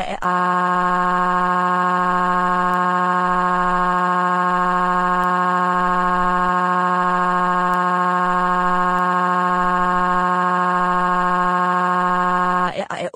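Computer text-to-speech voice crying one long, flat "waaa" at an unchanging pitch, like a cartoon wail.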